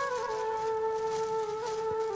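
Background music: one long held note on a flute-like wind instrument, wavering slightly in pitch.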